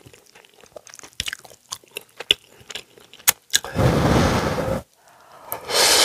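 Close-miked eating of cheesy instant ramen: soft wet chewing clicks and noodle sounds, then a loud rush lasting about a second, about four seconds in. Near the end comes a slurp as the noodles are drawn into the mouth.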